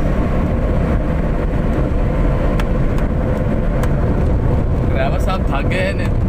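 Steady rumble of a car's engine and tyres heard from inside the cabin while driving, with a few faint clicks. Voices come in near the end.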